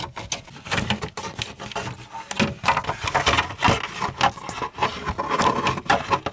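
Plastic gauge-cluster bezel of a Pontiac Grand Am being wiggled and worked loose from the dashboard: a continuous, irregular run of plastic scraping, rubbing and clicks.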